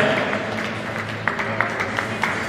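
Scattered handclaps from the audience over quiet background music, the claps starting about a second in.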